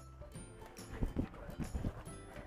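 Quiet background music, with a few irregular short taps.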